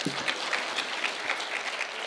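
An audience applauding steadily, a dense patter of many hands clapping.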